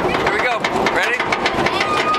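People's voices talking with no clear words among riders strapped into a stand-up roller coaster train, over a background hubbub, with scattered sharp clicks. A steady high tone begins near the end.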